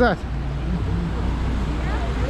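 Steady low outdoor rumble of city background noise, with a man's voice finishing a word at the very start and faint voices of passers-by underneath.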